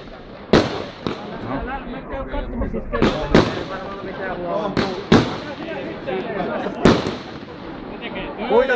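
Aerial firework shells bursting: about six sharp bangs at uneven intervals, two of them in quick pairs.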